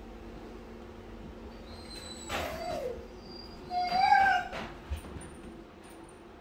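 German shepherd puppy whining twice in short, high whimpers while held in a sit-stay: the first about two seconds in, falling in pitch, the second about a second later.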